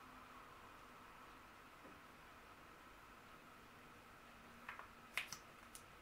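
Near silence with faint room hiss, broken by a few small, soft clicks in the last second and a half.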